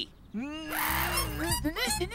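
Cartoon comic honk: a single long trumpet-like blast, starting about a third of a second in and lasting a little over a second, as bubble gum is blown out into the shape of a trumpet. A low music bed comes in under it.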